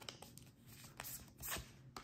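Tarot cards being handled: a card drawn from the deck and slid onto a wooden tabletop, with a few soft scrapes and light taps.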